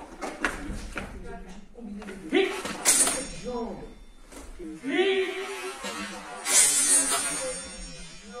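Loud wordless shouts from the sword fighters during a steel katana exchange, the two strongest about two and a half and five to seven seconds in, with short sharp knocks early on and near the middle.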